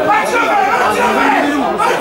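Several people's voices talking and calling out at once, overlapping into steady chatter with no words clear.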